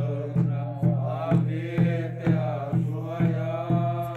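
A congregation singing a hymn together, kept in time by steady beats on a cylindrical hand drum, about two beats a second.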